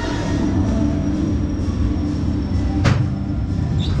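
Amusement ride machinery running with a steady mechanical rumble and hum, with one sharp clack about three seconds in.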